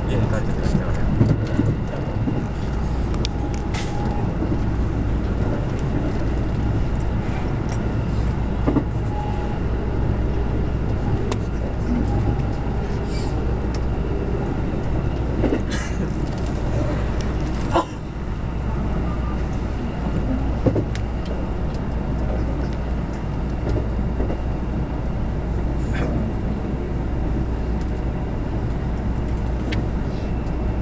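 Running noise of a JR West 221 series electric train heard from inside, just behind the cab: a steady rumble of wheels on rails over a low motor hum. Scattered sharp clicks and knocks, the loudest about 18 seconds in.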